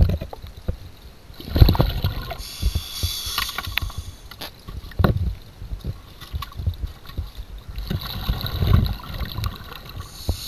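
Underwater sound of a scuba diver's regulator: rumbling, gurgling bursts of exhaled bubbles several times, with hissing between them and scattered short knocks.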